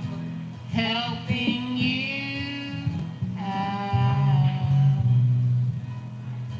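Karaoke singing over a backing track: two long sung phrases, with a short break between them about three seconds in.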